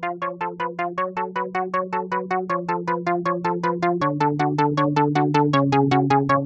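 Electronic instrumental music: a synthesizer plays short, rapid chord stabs, about six a second, over a held low chord that steps down every second or two, growing steadily louder as a build-up.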